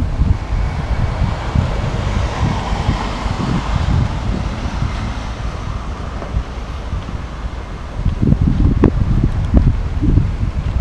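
Wind buffeting the camera microphone: an uneven low rumble in gusts that grows stronger about eight seconds in, over a faint steady background hum.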